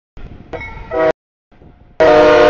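CSX freight train rolling through a grade crossing, with the locomotive's multi-tone air horn sounding from about half a second in and growing louder as a chord before cutting off abruptly about a second in. Fainter train noise follows.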